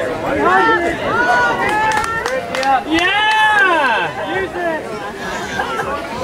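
Indistinct shouting and chatter from players and sideline spectators at an outdoor game, with one long drawn-out call about three seconds in.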